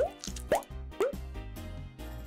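Three short, upward-sliding cartoon pop sound effects about half a second apart, marking ointment being squeezed from a tube, over soft background music.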